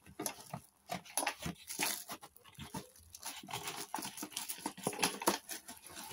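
Clear plastic packaging crinkling and a cardboard box rustling as hands dig through it, with many small irregular clicks and ticks.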